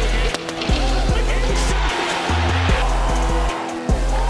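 Background music with a deep bass line and a regular beat, its notes changing every half second or so.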